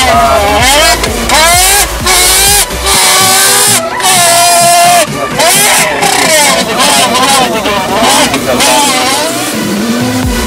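A man imitating a racing car with his voice: rising and falling revving whines broken by short pauses, like gear changes.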